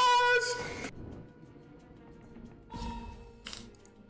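Online slot-game audio. A loud held note stops about a second in, then comes faint game music with a short swoosh near the end.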